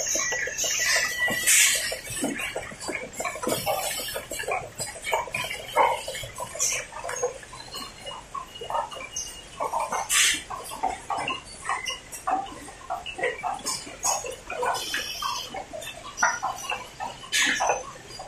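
Automatic paper cup packing machine running: a rapid, irregular clatter of mechanical clicks and knocks, with a short hiss every few seconds, loudest about ten seconds in.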